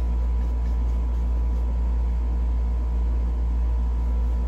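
Steady low hum with a faint thin whine above it, unchanging throughout: background room or equipment noise.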